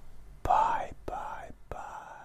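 A man whispering three short, breathy utterances about half a second apart, the first the loudest.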